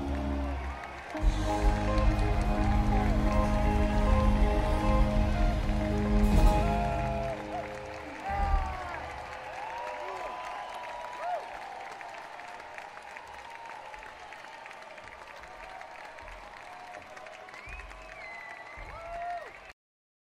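A live band's closing chord rings out and stops about eight seconds in, followed by audience applause and cheering with whistles. The recording cuts off suddenly near the end.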